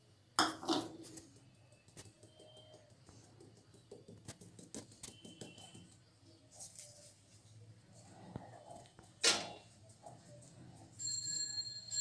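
Stainless steel mesh sieve being tapped and knocked over a glass bowl as flour is sifted: soft scattered tapping, with two louder knocks, one about half a second in and one about nine seconds in, and a brief high metallic ringing near the end.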